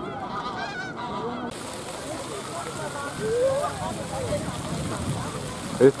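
Fountain jets splashing into a pond, a steady hiss of falling water that starts suddenly about a second and a half in. Waterfowl honk now and then over it.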